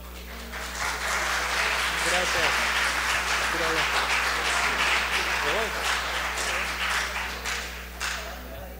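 Audience applauding, swelling about a second in and dying away near the end, with a few voices calling out over the clapping.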